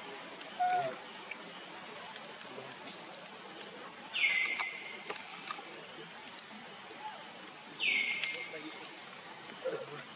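Steady high-pitched insect drone, with two louder calls that drop in pitch and then hold, about four seconds in and again near eight seconds.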